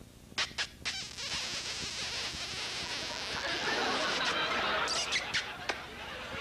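A man making kissing noises into a microphone: three quick lip smacks, then a long, loud, hissing smooch, with a few more smacks near the end.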